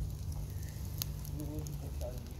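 Burning charcoal in a mangal crackling, with scattered small clicks and one sharp pop about a second in.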